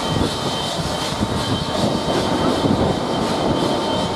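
Southern Railway Merchant Navy class steam locomotive No. 35028 Clan Line letting off steam: a loud, steady hiss that does not let up, with two faint steady tones running under it.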